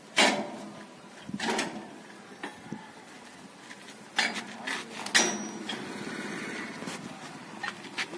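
Irregular knocks and clatter of metal parts being handled and fitted on a motorcycle's metal luggage rack. The loudest knocks come about a quarter second in and just after five seconds.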